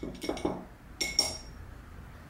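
A single light clink with a short ring about a second in, from small hard painting things being handled on the table. It follows a few faint ticks of handling.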